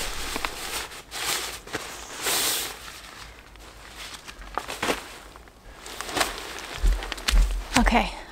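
Nylon tent fabric rustling and swishing as a tent is pulled from its stuff sack and shaken out, with footsteps on a dirt campsite. A few low bumps come near the end.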